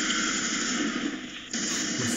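Steady harsh noise, like hiss, from the soundtrack of a played online video, thinning briefly about a second and a half in.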